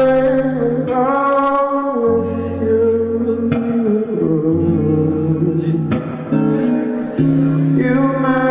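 Live rock band playing a song: a man sings held, sliding notes over a Fender electric guitar, with bass notes underneath.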